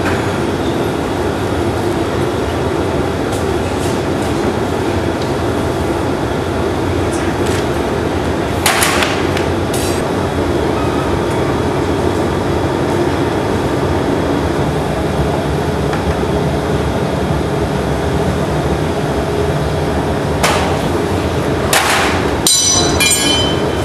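Steady roar of a glassblowing hot shop's gas-fired furnace and glory hole, with a low hum underneath. A few brief, sharp sounds break through about nine seconds in, again just before ten seconds, and near the end.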